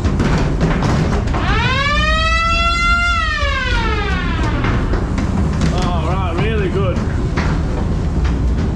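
Ghost train's spooky sound effects: one long wail rising and then falling in pitch from about a second and a half in, then short wavering cries near the end, over the steady low rumble of the ride.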